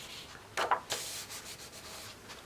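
Paper pages of a large colouring book being turned by hand, with a couple of brief swishes of paper sliding and rubbing against paper.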